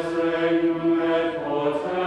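Voices chanting in unison, sung liturgical chant with long held notes in two octaves; the note changes about two-thirds of the way through.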